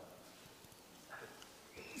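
Near silence: faint room tone, with two small, brief faint sounds, one about a second in and one near the end.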